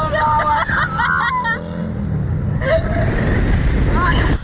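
Riders on a Slingshot ride screaming for the first second and a half, then wind rushing and buffeting the onboard camera's microphone as the capsule swings, a heavy low rumble.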